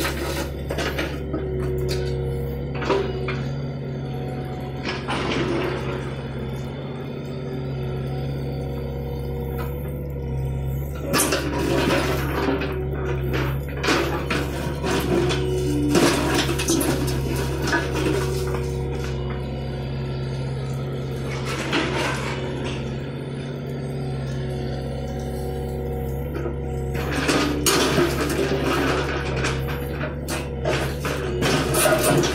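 John Deere 50D compact excavator's diesel engine running steadily under load while the bucket digs through broken concrete rubble. Chunks of concrete clatter and knock together in irregular bursts, several times, heaviest near the middle and towards the end.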